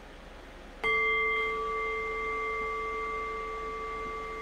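A meditation bell struck once, about a second in, to close the meditation session. It rings on with several clear overlapping tones that fade slowly.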